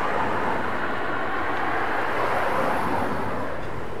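City street traffic: a steady hiss of cars passing on the road, swelling slightly around the middle.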